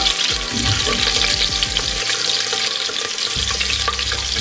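Whole spices sizzling in hot ghee in a pressure cooker, stirred with a wooden spatula that scrapes and clicks against the pot.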